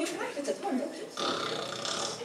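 A guttural, belch-like vocal noise made by a voice in several short stretches, as a comic sound effect within a sung story.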